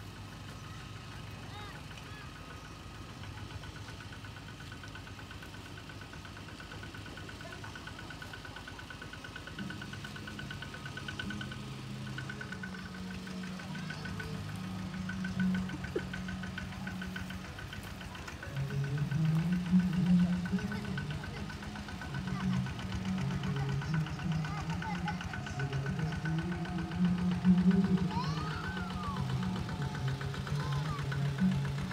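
Many men's voices singing together in unison. It starts about a third of the way in and grows louder past the middle, moving through held notes. A steady mechanical hum runs underneath.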